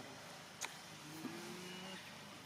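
A single sharp click about half a second in, then a faint, steady low hum of a distant engine for about the last second.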